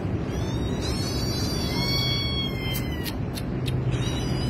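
A cat meowing: one long, high-pitched, drawn-out meow that falls slightly at its end, followed by three or four sharp clicks near the end, over a steady low hum.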